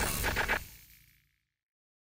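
The tail of a music-and-effects logo sting dying away, with a few faint clicks, cutting to complete silence within the first second.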